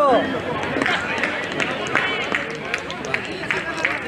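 Players and onlookers chattering and calling out, several voices overlapping, with a loud call right at the start and another about two seconds in.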